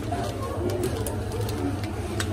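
Supermarket checkout ambience: a steady low hum under indistinct background voices, with light crinkles and ticks of plastic-wrapped groceries being handled and packed into a cloth bag.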